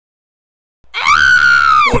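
A single high-pitched scream from a cartoon character's voice, starting about a second in, held for about a second and dropping away at its end.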